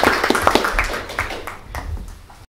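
Audience applauding, with many separate hand claps that thin out and die away over the last second.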